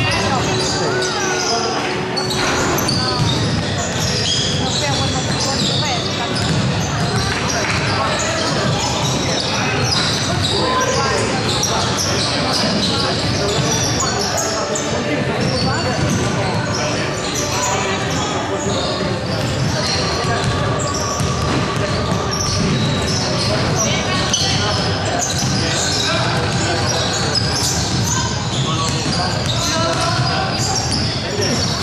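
Several basketballs bouncing on a wooden sports-hall floor, mixed with the steady chatter and calls of many players, in a large sports hall.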